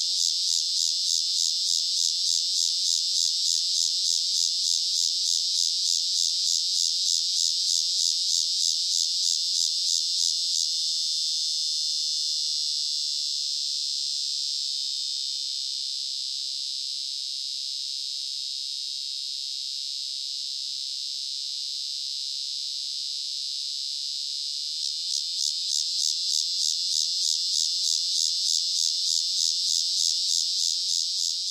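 Walker's annual cicada (Megatibicen pronotalis) male singing: a high, rapidly pulsing buzz that about ten seconds in runs into a steady unbroken buzz, then breaks back into pulsations about five seconds before the end.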